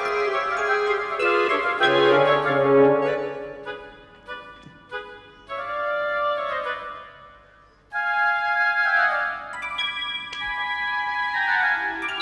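Background score music: sustained keyboard chords with a higher melody line, in phrases that thin out about four seconds in and start afresh just before eight seconds.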